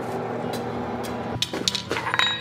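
Steady hum and rush of a blacksmith's forge. About one and a half seconds in, a few sharp metallic knocks begin as hot square steel bar is worked on the anvil.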